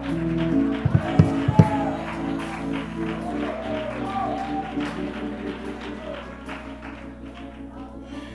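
Church worship music: held chords played steadily, with a few sharp knocks about a second in and voices singing or praising over it.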